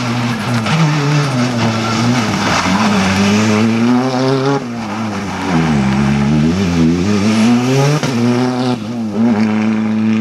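Hyundai i20 rally car's turbocharged engine revving hard on a stage. The revs drop and waver around the middle as it slows for a tight turn, then climb sharply again as it accelerates away.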